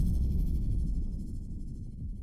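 The low rumbling tail of a cinematic impact from UVI Meteor's 'Asteroid' rise-and-hit preset, decaying steadily after the hit.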